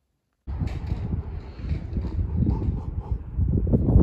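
Wind buffeting the microphone outdoors: an uneven low rumble that cuts in suddenly about half a second in, after silence.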